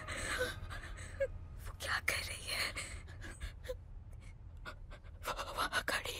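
Quiet, tense breathing and panting of frightened girls, with a few short gasps.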